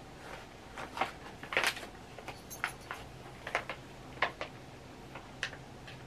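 Faint, irregular wet mouth clicks and smacks of someone chewing a soft gummy candy, a dozen or so small clicks spread unevenly.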